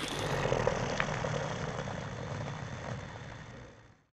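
Steady background noise with a low rumble, like passing traffic, fading out to silence near the end.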